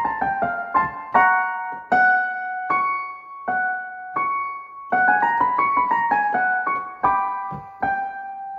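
Piano playing a warm-up exercise pattern, a quick descending run of notes followed by single chords that ring out, with a second run starting about five seconds in. No voice sings along.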